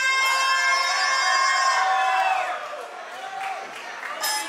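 A single voice holding one long shouted note over a live concert crowd, breaking off a little over two seconds in and leaving the crowd's noise.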